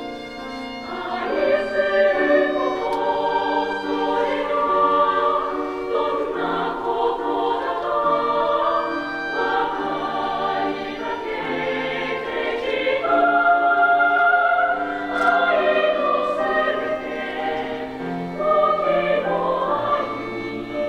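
A girls' choir singing a song in several parts, the voices coming in together about a second in and holding long, sustained chords.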